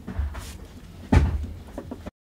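Handling noise from a Leica M8 camera body in gloved hands: light rustles, then one dull knock about a second in as the camera is set down on the table.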